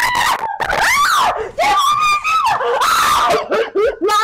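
A woman screaming in distress: several loud, high cries with short breaks between them, as she is being beaten.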